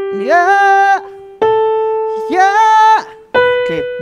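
Electric keyboard sounding single sustained notes that step upward, each matched by a male voice singing 'ya'. The voice slides up from below into the note and holds it for about a second, twice in a row, as in a vocal range test. A third, higher keyboard note sounds near the end.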